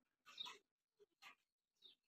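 Near silence with four faint, short rustles from a pigeon's feathers and wings being handled in the hands, the first the loudest.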